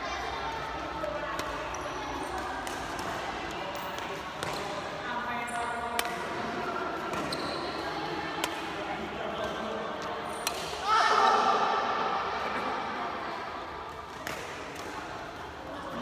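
Badminton rackets hitting a shuttlecock in a doubles rally: sharp hits every second or two, echoing in a large hall over background voices. A loud shout rings out about eleven seconds in.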